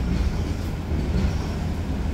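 A steady low rumble of background noise, with no distinct event.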